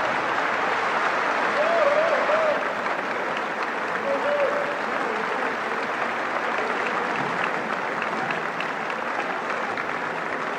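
Audience applauding steadily after a live orchestral cantorial performance, with a few voices calling out over the clapping.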